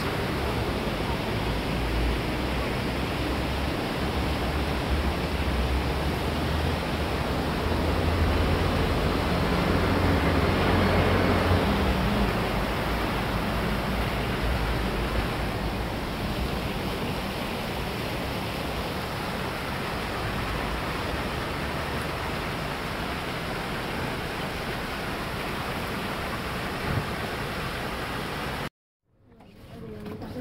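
Steady splashing of a plaza fountain's water jets, with a low rumble that swells around ten seconds in. The sound cuts out suddenly near the end.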